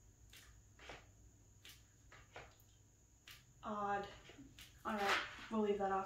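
Faint scattered taps of a hand pressing a hardcover photo book's cardboard flap shut. About halfway through, a woman's voice makes wordless sounds, and it is louder than the taps.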